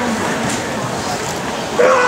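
Murmur of an indoor arena, then near the end a sudden, high-pitched held shout from a spectator, cheering the vaulter over the bar.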